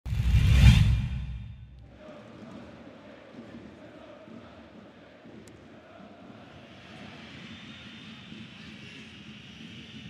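A loud swoosh with a deep rumble that dies away within two seconds, then the steady murmur of a stadium crowd.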